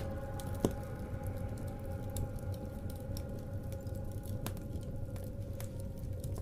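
Wood fire crackling in a fireplace: scattered small pops and snaps, with a louder pop about half a second in, over a low steady drone.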